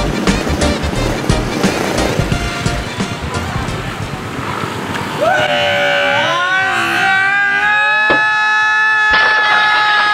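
Background music with a beat, which about five seconds in gives way to a long, loud squeal of several held pitches that slide up at its start: a skidding-tyre screech sound effect.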